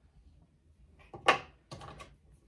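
Dry-erase markers being handled: two short, sharp clicks and rattles about a second in and near the end, as a marker is capped and another uncapped.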